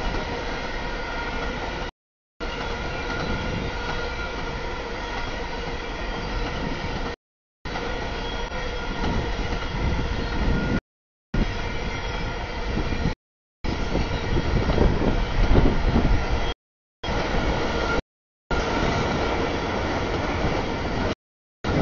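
CSX freight train cars rolling steadily past a grade crossing, their wheels on the rails making a continuous rumble that grows louder about three-quarters of the way through. The sound drops out completely for brief moments about six times.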